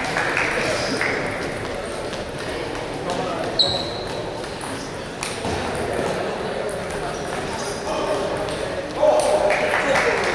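Large sports hall ambience during a table tennis tournament: a murmur of voices with scattered short clicks of ping-pong balls. There is one short high ping about a third of the way in, and the voices get louder near the end.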